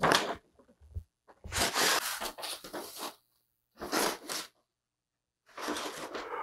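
A large sheet of paper rustling and crinkling as it is handled and bent by hand, in four short bursts with brief silences between.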